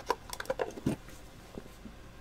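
Light taps and clicks from an empty cardboard trading-card box being handled and closed, a quick run of them in the first second and a couple more later.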